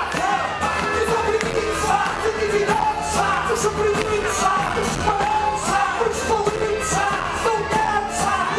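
Live band playing a pop song with a lead singer over a steady drum beat.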